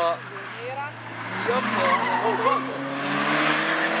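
Car drifting: tyres skidding on the asphalt while the engine runs steadily, the tyre noise building after about a second.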